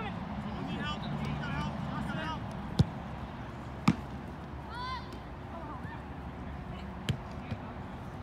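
A soccer ball being kicked: two sharp, loud kicks about a second apart, then two lighter touches near the end, with players shouting out short calls in between.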